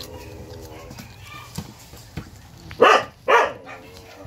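Puppies barking: two short, sharp barks about half a second apart near the end.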